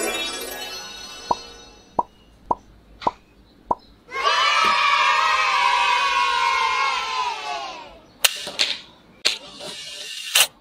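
Edited sound effects: a swoosh that fades over about a second, then five short pops evenly spaced about half a second apart. These are followed by a loud three-second effect of many pitched voices sliding slowly downward, and sharp clicks near the end from the plastic toy revolver.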